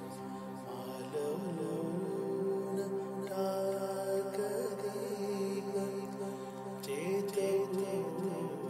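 A voice singing a slow, ornamented bhavgeet melody with held and sliding notes over a steady drone accompaniment. The voice comes in about a second in.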